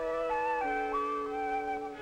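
Background music from the film's score: a slow, flute-like melody of held notes stepping up and down over sustained lower notes.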